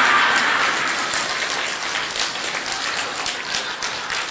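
Audience applauding in a large group, loudest at first and gradually dying away.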